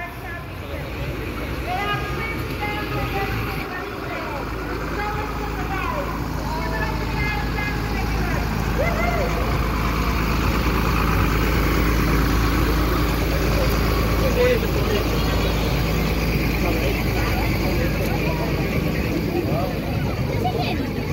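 Heavy diesel lorry engine running as the truck passes close by, its low hum growing louder over the first half, with voices of the crowd over it.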